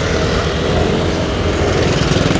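Motor scooters and motorbikes running close by in slow traffic: a steady engine drone with a fast pulsing beat, growing stronger near the end.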